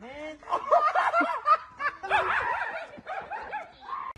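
Several people laughing and snickering, with a few words mixed in.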